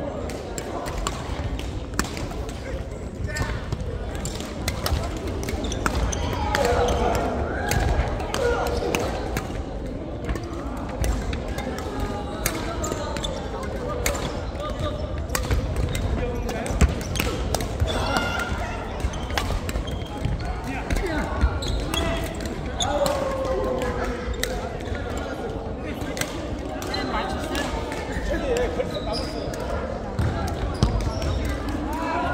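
Badminton play on an indoor wooden court: rackets striking the shuttlecock and players' shoes hitting and scuffing the floor, heard as many short, sharp clicks and knocks scattered throughout, over a background of voices in the hall.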